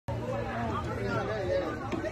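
Several people talking at once in the background, overlapping chatter with no clear words, and a light click near the end.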